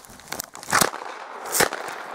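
Crunching and crackling of deep snow as someone moves through it, with two loud sharp knocks a little under a second apart.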